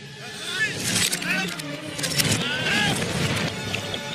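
Animated-film soundtrack played backwards: reversed shouts and cries over rushing noise, with sharp hits about one and two seconds in.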